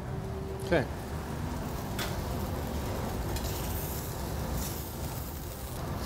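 Sockeye salmon searing in a little oil in a hot pan, sizzling steadily over a low kitchen rumble, with one short knock about two seconds in.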